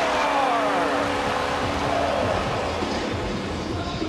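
Hockey arena crowd noise during play. Over the first two seconds a held tone sounds and a pitched sound falls in pitch.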